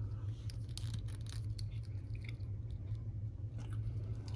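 A plastic action figure handled and posed in the hand: faint scattered clicks, scratches and rubbing from its joints and the fingers on its plastic, over a steady low hum.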